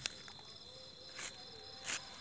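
Crickets chirping steadily in the background, a continuous high trill. A sharp click comes right at the start and two short rustling noises follow, about a second in and near the end, as hands handle the firecracker on the sand.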